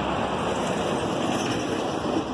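Steady rushing noise of road traffic passing on a busy multi-lane road.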